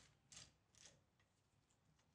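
Near silence with a few faint clicks and rustles in the first second as a clamp is fitted to a freshly glued knife handle.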